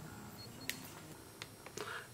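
Faint handling noise with a few small, sharp clicks, most of them in the second half, as forceps and tie line are worked to cinch a knot onto rubber tubing.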